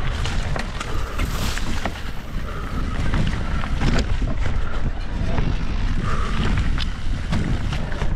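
Electric mountain bike riding fast down a rough dirt trail: wind buffeting the camera microphone over a steady rumble of the knobby tyres on dirt and leaves, with frequent small knocks and rattles from the bike over bumps.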